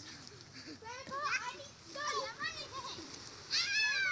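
Children shrieking and yelling in high, excited voices, several short calls in a row, the loudest a long falling squeal near the end.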